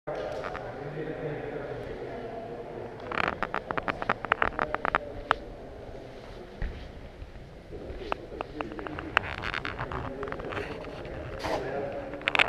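Indistinct chatter of several people echoing in a large gym hall, with clusters of sharp clicks and clatter about three seconds in and again from about eight seconds.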